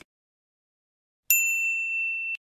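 Notification-bell 'ding' sound effect for an animated subscribe-bell icon: one bright ringing tone that starts sharply about one and a half seconds in and holds steady.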